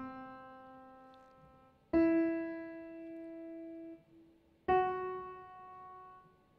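Three single piano notes, each higher than the last, played from a MIDI clip with the sustain (hold) pedal off. Each note fades after it is struck, and the second stops with a short gap before the third begins, so the notes do not run smoothly into one another.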